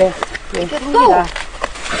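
A woman's voice speaking briefly, with a few short sharp snaps and rustles of ramie leaves being plucked off their stems by hand.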